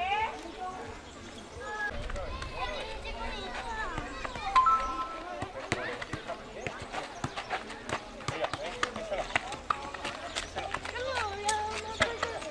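Voices chattering in the background, with a run of quick light taps and scuffs in the second half as a small boy kicks and dribbles a football on a gravel path.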